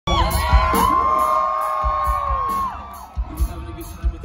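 Live rock band playing with a drum beat, with the crowd cheering and whooping close by. The loudest part, a long held high whoop over the band, ends after about two and a half seconds, and the sound then drops.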